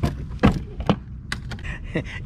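A few sharp knocks and clunks, roughly half a second apart, of plastic bottles, a water jug and the lid being handled in a hard-sided cooler.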